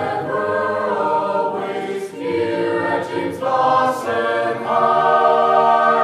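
Chamber choir singing a school song in four-part harmony. The final phrase closes on a long held chord for the last second or so.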